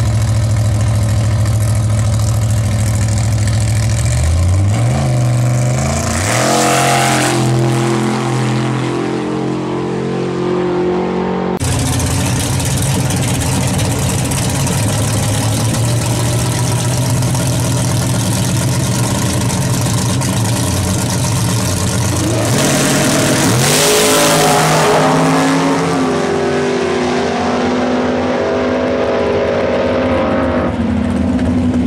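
Drag-race car engines at the start line, two runs in turn. A car idles loudly, then revs climb in steps about four seconds in as it launches and shifts. After a sudden break, a second car idles at the line and launches about 23 seconds in, its pitch rising again through the gears.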